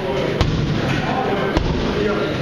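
Boxing gloves hitting focus mitts: two sharp smacks about a second apart, over background voices.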